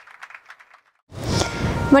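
The last notes of a short logo jingle ring out and fade, followed by a moment of silence. About a second in, steady outdoor background noise begins, and a woman starts to speak at the very end.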